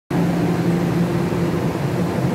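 Steady hum with a low, even drone from a Puyuma Express TEMU2000 tilting electric multiple unit at the platform, its onboard equipment running.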